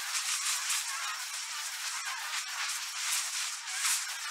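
Steady crackling, fizzing hiss of a burning sparkler, thick with tiny pops and with nothing in the bass.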